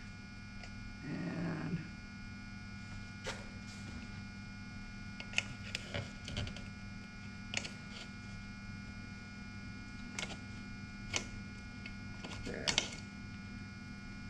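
Screwdriver scraping and clicking against the metal rim of a paint can, irregular short clicks and scrapes as dried paint is cleared from the rim so the lid will seal, over a steady electrical hum.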